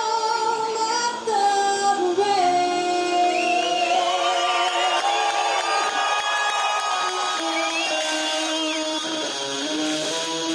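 Background music with long held notes and a few sliding pitches, including a singing voice.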